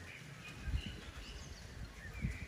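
Faint outdoor birdsong: short, high chirps from several birds. Underneath are a few soft, low thuds of a cantering horse's hooves on a sand arena.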